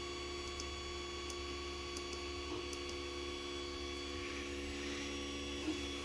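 A 3D printer running: a steady hum made of several held tones, with a couple of faint ticks.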